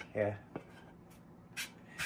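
A hand rubbing over the black-painted back of a wooden slat panel: two short dry brushing sounds near the end, after a single light click about half a second in.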